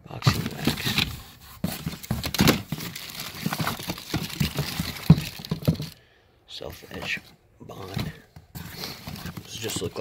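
Hand rummaging through a cardboard box of small packaged supplies. Cardboard boxes, plastic bottles and plastic bags rustle, crinkle and knock together in irregular bursts, with a brief pause about six seconds in.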